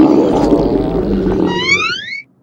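Cartoon stomach-growl sound effect: a loud, long, low rumble that ends in a rising squeal about a second and a half in, the sign of a character's empty, hungry stomach.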